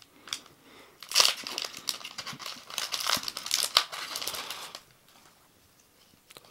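Foil booster-pack wrapper being torn open and crinkled by hand: a dense crackling from about a second in, stopping short of five seconds.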